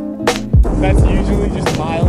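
Background music with a steady kick-drum beat. About half a second in, the rolling rumble of longboard wheels on pavement comes in under it, with brief snatches of voices.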